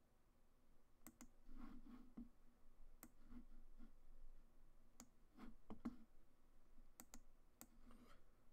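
Faint, sparse clicks of a computer being operated: about half a dozen sharp clicks a second or two apart, with a few soft low knocks in between.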